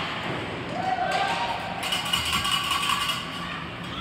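Sounds of an ice hockey game in a rink: voices calling out, with sharp knocks of sticks and puck on the ice and boards.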